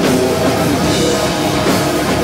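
Heavy rock band playing live and loud: distorted electric guitars, bass and a drum kit in a dense, steady instrumental passage.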